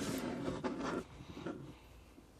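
Hands handling and plugging together small USB gadgets on a wooden tabletop: about a second of rubbing and sliding with a few small clicks, then a few fainter clicks about a second and a half in.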